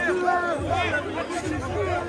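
Crowd chatter: many voices of a packed crowd of spectators talking over one another at once.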